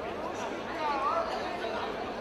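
Indistinct chatter of several voices, with one voice briefly standing out about a second in.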